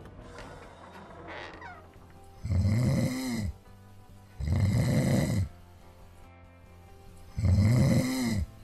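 Three long, loud snores about two seconds apart, each rising and falling in pitch, performed by a male voice actor for a sleeping fox character, over soft background music.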